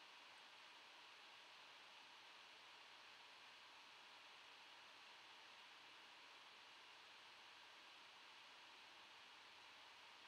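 Near silence: only a faint, steady hiss of room tone.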